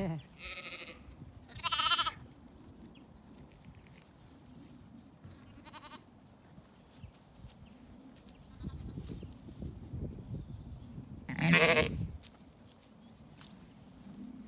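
Zwartbles sheep bleating: a couple of high bleats in the first two seconds, a faint one about six seconds in, and a loud, deeper bleat near the end.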